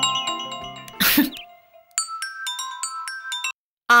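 Chiming background music of bell-like mallet notes fading out, a short noisy whoosh about a second in, then a mobile phone ringtone playing a short run of electronic notes that cuts off abruptly, just before a woman says "Ah".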